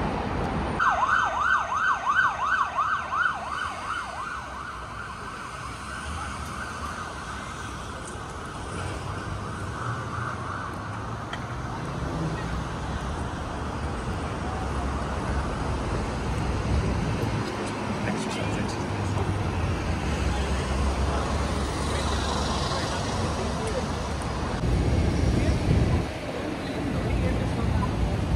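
Emergency vehicle siren in a fast yelp, its pitch sweeping up and down about four times a second for about three seconds starting a second in. After that, steady city street traffic noise with passing vehicles runs on.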